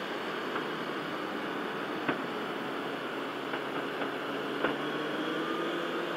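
Motorcycle riding at speed: a steady rush of wind noise with the engine's hum faintly beneath it, rising slowly. Two small clicks, about two seconds in and again near the five-second mark.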